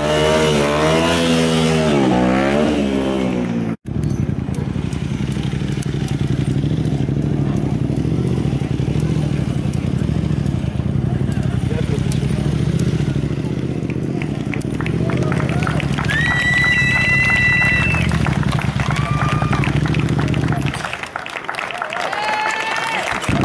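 Motorcycle engine revving up and down for the first few seconds. After a cut it runs steadily at low revs while the rider does stunts, with a few high-pitched squeals a little past the middle. The engine sound falls away about a second before the end.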